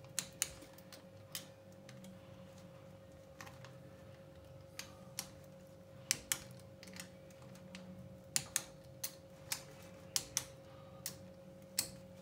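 Small click-type torque wrench ratcheting and clicking off as the crankcase bolts of a Mercury 3.3 hp two-stroke outboard are tightened to 55 inch-pounds in a circular pattern. Each click that releases marks a bolt reaching set torque. The result is a scatter of sharp metallic clicks, some in quick pairs, over a faint steady hum.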